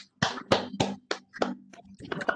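A run of about six sharp taps, roughly three a second, over a faint steady low hum.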